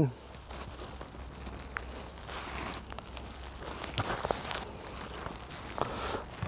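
Quiet handling sounds as hook-and-loop (Velcro) patches are pressed onto a nylon waist pack: soft fabric rustling with a few small clicks and scrapes.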